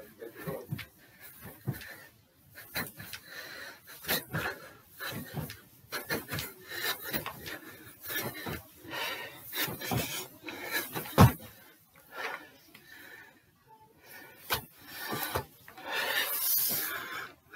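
Feet landing on the stairs as a man jumps up a staircase one step at a time: a string of irregular thuds, with one much louder thump about eleven seconds in, and breathing hard between the landings.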